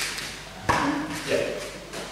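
A man speaking briefly ("Yeah") in a hall, with a single dull thump about two-thirds of a second in.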